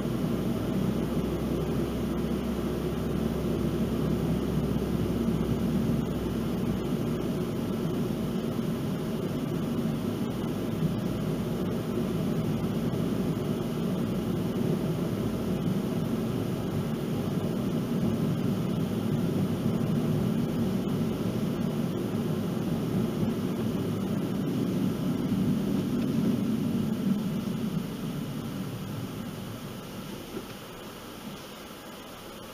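Steady road and tyre noise heard from inside a moving car, dying down near the end as the car slows.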